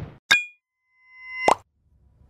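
Logo-animation sound effects: a short bright pop about a third of a second in, then a swell that rises into a second sharp pop at about a second and a half.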